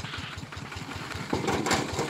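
Small engine of a cassava grinder running steadily at idle with an even, rapid pulse. A harsher noise comes in over it about 1.3 seconds in.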